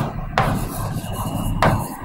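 Handwriting strokes of a stylus scratching and rubbing on the surface of an interactive display screen, two stronger scrapes about a third of a second and about one and a half seconds in.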